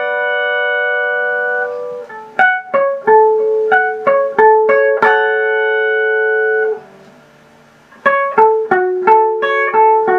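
Clean-toned electric guitar picked one note at a time in a slow melody. A held note rings out, then a run of plucked notes and a second long held note that dies away into a pause of about a second, before picked notes start again.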